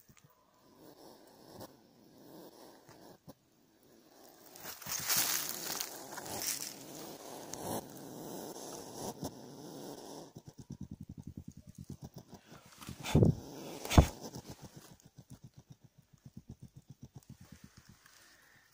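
A hedgehog huffing and puffing like a steam engine, the defensive sound of a disturbed hedgehog with its spines raised. It goes from soft breathy huffs into a fast, even run of puffs about ten a second, broken by two short, loud, sharp snorts.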